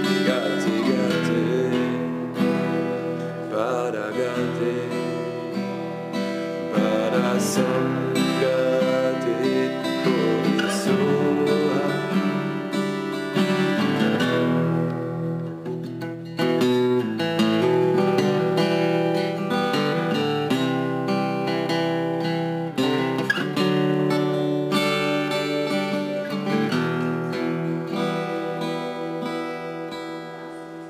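Strummed acoustic guitar music with a voice singing at times, growing quieter near the end.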